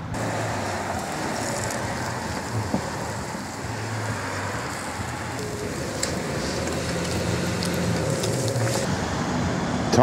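Steady rumble like distant road traffic, with a few faint clicks and crackles from a burning one-use disposable barbecue.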